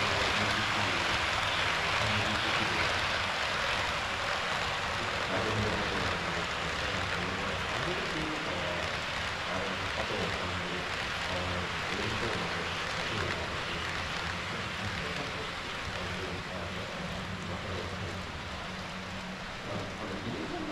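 HO-scale model trains running on the layout: a steady rolling rumble and hiss of wheels on track that fades slowly toward the end as the train moves away.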